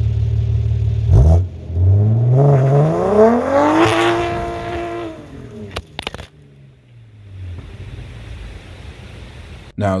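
BMW B58 turbocharged inline-six revving through its exhaust: a steady low note, then the pitch climbs for about two and a half seconds, holds briefly and falls away. A few clicks follow, then a quieter steady run.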